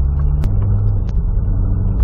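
2012 Corvette Grand Sport's LS3 V8 heard from inside the cabin while driving: a steady low rumble with road noise. About half a second in there is a click and the engine note steps up in pitch, then holds.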